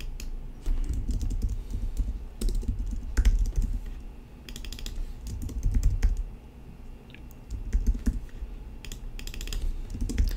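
Typing on a computer keyboard in short, irregular bursts of keystrokes.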